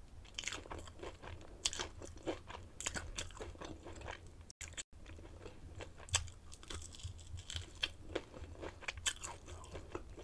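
Close-miked chewing of crispy breaded fried food, with many irregular crunches. The sound cuts out briefly twice near the middle.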